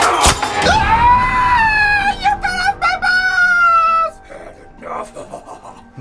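A sharp chop or impact, then a man's long, high-pitched scream of pain lasting about three seconds and sliding slightly down in pitch.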